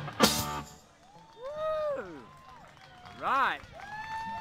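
A live rock band ends a song with a final crashed chord on electric guitars and drums that stops about half a second in. A few people then whoop, in long rising-and-falling calls.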